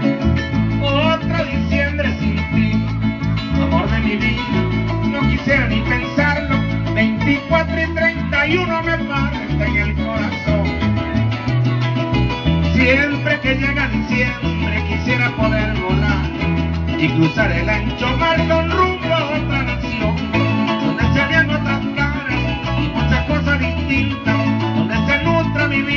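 Instrumental passage of Venezuelan llanero music: a llanera harp playing quick runs of notes over a steady, pulsing bass line.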